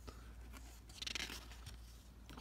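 A hand brushing across the paper page of a picture book, with a short rustle about a second in.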